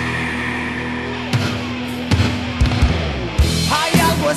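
Heavy metal song by a 1980s Spanish band: a sustained band chord rings out, drum hits come in from about a second in, and a singing voice enters near the end.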